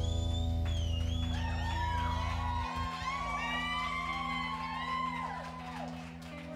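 A live rock band's last chord ringing out and fading after the song's final hit, the low bass note cutting off about halfway through. Over it, the audience cheers, with whoops that rise and fall in pitch.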